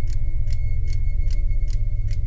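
Clock ticking evenly, about two and a half ticks a second, over a loud steady low drone.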